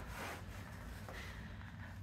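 Faint rustling of backpack straps and clothing as the hip belt is adjusted, over a low, steady room hum.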